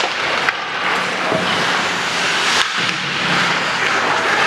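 Ice hockey play in a rink: a steady scrape of skates on the ice amid general arena noise, with a sharp clack about half a second in and another a little past two and a half seconds.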